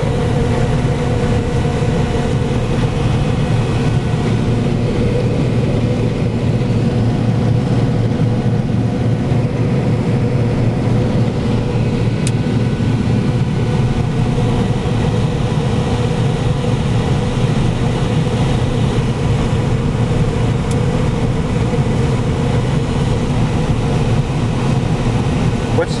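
A 425 HP combine running under load while harvesting soybeans, heard from inside its cab. It makes a steady low drone with a steady higher hum over it.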